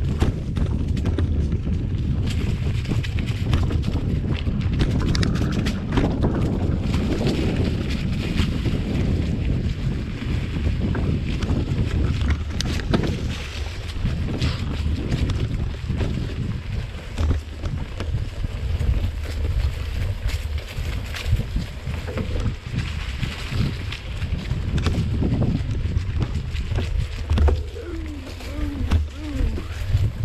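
Wind buffeting the camera microphone as a mountain bike rolls along a leaf-covered dirt singletrack, with frequent clicks and rattles from the bike jolting over bumps.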